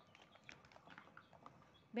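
Faint scattered light clicks and taps of small containers being handled; otherwise a quiet room.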